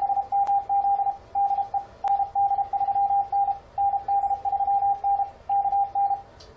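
Morse code (CW) keyed by fldigi through an Icom IC-7300, sent at a steady speed on a single pitch. It spells the reply to a CQ call: "AA6MZ DE ND3N ND3N KN".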